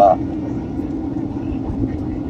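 Steady cabin noise of a Boeing 767 airliner in descent: an even drone of engines and airflow with a steady low hum, heard from inside the passenger cabin.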